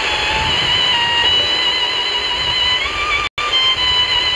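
A weak, distant FM broadcast on a Tecsun PL-310ET portable radio's speaker: a music melody heard through steady hiss. The sound cuts out completely for a split second about three seconds in.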